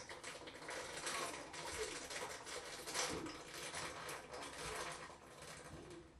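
Malt liquor being chugged straight from a 40-ounce bottle: rapid, irregular gulping and swallowing, with the liquid glugging and fizzing in the bottle as it drains.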